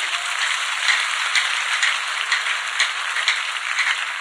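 A large congregation clapping, a steady, dense applause.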